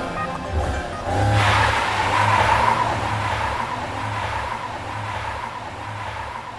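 Small hatchback car pulling away hard, its tyres squealing from about a second in, the sound fading as it drives off. Music with a steady bass beat plays underneath.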